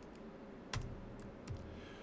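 A few separate keystrokes on a computer keyboard, about four clicks spread over two seconds, while a typed character is deleted.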